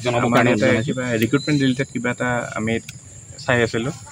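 A man speaking in a statement, pausing briefly about three seconds in, over a steady high-pitched insect drone.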